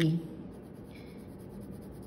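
Colored pencil shading on paper: a faint, steady scratching of the pencil lead across the page.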